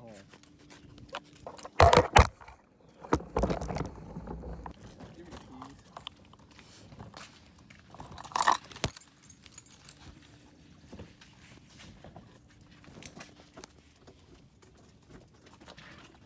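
Handling noise from a handheld phone camera being carried and jostled: two loud knocks about two seconds in, then rustling, and another loud knock a few seconds later, followed by scattered faint clicks.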